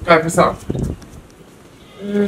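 A person's voice: two short vocal sounds in the first half second, followed by low background.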